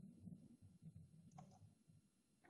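Near silence: faint room tone with a small click about one and a half seconds in.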